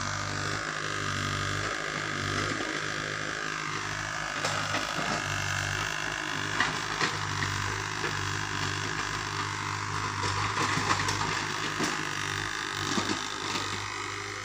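Mini excavator's diesel engine running at a steady drone, with scattered knocks and cracks as its bucket works through wooden debris from about four seconds in.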